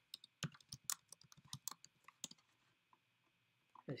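Typing on a computer keyboard: a quick run of faint key clicks for about two and a half seconds, then the typing stops.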